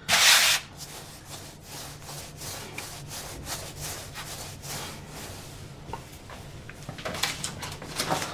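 Hands rolling a log of baguette dough back and forth on a floured wooden worktop: a run of soft rubbing strokes, with a louder swish right at the start.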